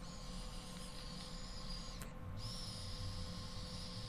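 Faint airy hiss of air being drawn through a 10 Motives disposable e-cigarette, a sign of its very loose, airy draw. There are two long pulls, split by a faint click and a short break about two seconds in.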